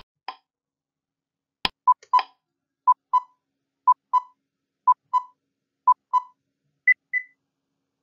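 Quiz-game countdown timer sound effect: a couple of clicks, then a pair of short beeps every second for about five seconds, ending near the end with a higher-pitched pair of beeps as the time runs out.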